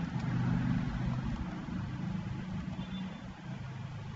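A low background rumble that slowly fades.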